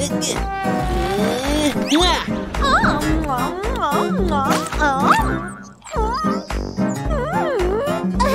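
Children's cartoon background music with a steady beat, under wordless cartoon vocal sounds whose pitch slides up and down. The music dips out briefly a little past the middle.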